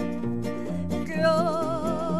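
Acoustic guitars strumming and plucking a traditional Mexican accompaniment. About a second in, a woman's voice comes in on a long held note with wide vibrato.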